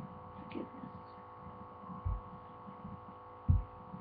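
Steady electrical hum picked up by a webcam microphone, with two dull low thumps on the microphone, a small one about two seconds in and a louder one near the end.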